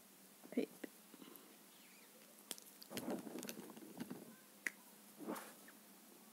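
Quiet handling sounds from colouring with a felt-tip pen on paper: a few sharp clicks and soft rustles, with a short faint vocal sound about half a second in.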